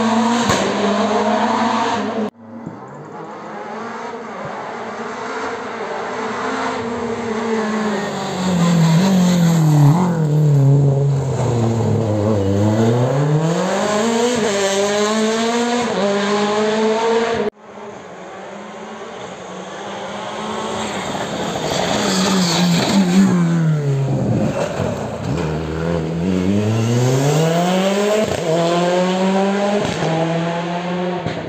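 Rally car engines passing at speed, one car at a time. Each engine note drops steeply as the car brakes and shifts down, then climbs in steps through the gears as it accelerates away. The sound breaks off suddenly twice.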